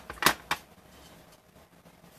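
Two quick, sharp taps of a clear acrylic stamp block against an ink pad, a quarter of a second apart, then faint room tone.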